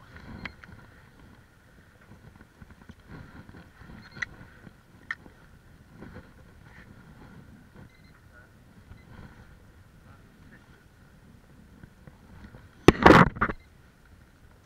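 Low background of water and wind with a few light clicks. About a second before the end comes a loud, brief clatter of handling noise as the rod and reel are moved right against the camera's microphone.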